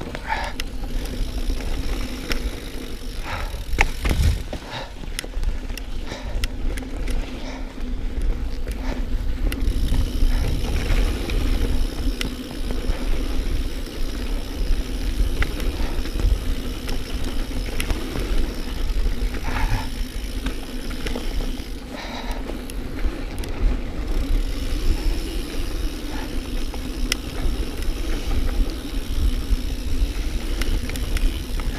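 A mountain bike riding fast along a dirt trail: continuous low tyre and wind rumble, with frequent sharp clicks and rattles from the bike over bumps.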